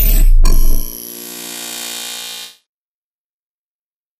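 Logo sting sound effect: a loud, bass-heavy impact, then a second hit that leaves a ringing, many-toned chord sounding until it cuts off about two and a half seconds in.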